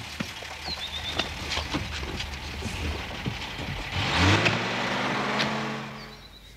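A motor vehicle engine runs with a low steady hum. About four seconds in it revs up, its pitch rising and then holding, and it fades away near the end.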